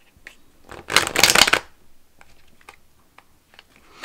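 A deck of tarot cards being riffle-shuffled by hand: one loud, rapid fluttering riffle about a second in that lasts about half a second, with a few light card taps and clicks around it.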